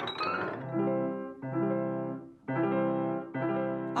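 Steinway grand piano sounding four sustained chords in turn, each held about a second.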